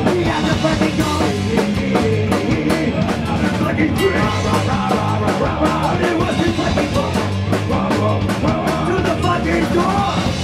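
Punk rock band playing live and loud, with electric bass and a pounding drum kit.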